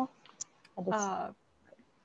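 Two faint short clicks, then a brief half-second voiced utterance from a person, without clear words, then a pause.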